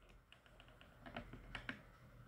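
Near silence broken by a quick series of faint light clicks, most of them in the second half.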